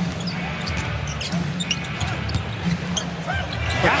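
Basketball being dribbled on a hardwood arena court, in short sharp hits, over a steady arena crowd hum and music playing in the arena.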